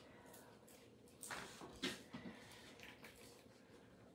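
Faint handling sounds: soft rustling of a paper towel and a few short knocks and scrapes as a kitchen knife is taken up and set to a burrito on a cutting board, the strongest a little past one and just under two seconds in.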